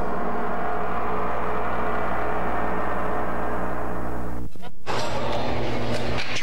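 A large Chinese gong rings out after a strike, many overtones slowly fading, then cuts off abruptly about four and a half seconds in.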